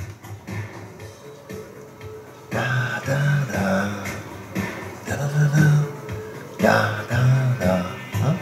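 Music from a film trailer playing on a computer, quiet at first and getting louder about two and a half seconds in, with a beat the viewer likens to 1950s–70s music.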